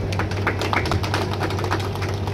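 Rapid, irregular clicks or taps over a steady low hum.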